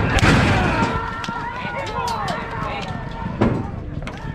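Horse-racing starting gate doors banging open as the horses break, followed by loud shouting voices and another sharp bang about three and a half seconds in.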